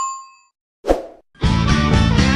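The ringing tail of a notification-bell ding from a subscribe animation fades out, a short plop sounds about a second in, and loud rock music with guitar starts about half a second later.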